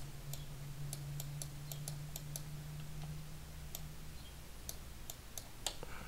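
Computer mouse clicking lightly and irregularly, a dozen or so clicks, as the sculpting tool is dragged and the view turned. A low steady hum lies underneath and fades out about four seconds in.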